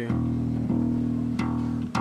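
Four-string acoustic bass guitar plucked by hand, the same low note struck about four times and left to ring between strikes: a nice deep tone.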